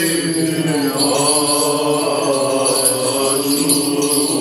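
Byzantine chant sung in long, slowly gliding notes, with the small bells of a swinging censer jingling over it.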